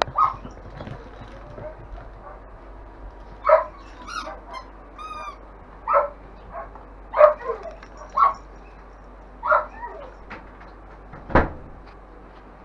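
Five-week-old longhaired German Shepherd puppies giving short yips and barks every second or two, with a few thin, high whines among them. A single thump near the end.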